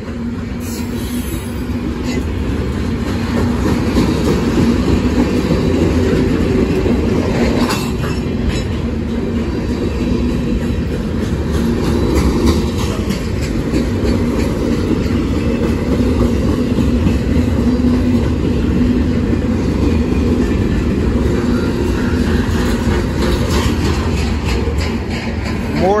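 Freight cars of a long manifest train rolling past at a grade crossing: a loud, steady rumble of steel wheels on the rails with a steady low hum, and clicks as the wheels pass over rail joints.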